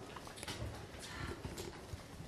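Classroom background noise: scattered light knocks and taps from children at their desks, with faint murmuring voices.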